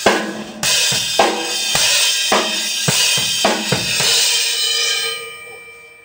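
Drum kit played in a slow, simple beat with cymbals ringing throughout, strokes about twice a second. The playing stops about four seconds in and the cymbal fades out.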